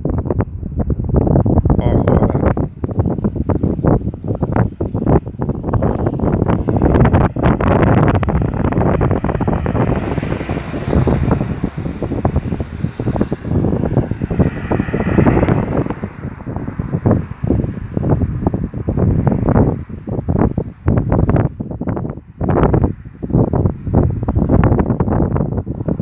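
Wind buffeting the microphone in uneven gusts. About halfway through, a car comes up the road and passes, its tyre hiss swelling and then fading.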